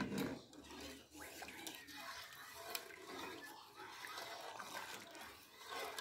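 Wooden spoon stirring sugar into a pot of thin mocotó broth to melt it: faint sloshing of the liquid with light, scattered scrapes and clicks of the spoon against the pot.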